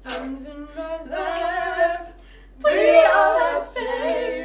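Girls' voices singing unaccompanied, with no instrument. A short sung phrase is followed by a brief pause, then a louder burst of voices together near the end.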